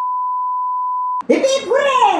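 A steady, pure test-tone beep, the kind that goes with colour bars, held for just over a second and cut off abruptly with a click. A woman's voice follows near the end.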